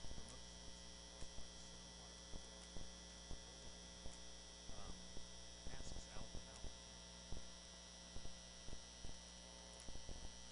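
Low, steady electrical mains hum from the sound system, with faint scattered clicks.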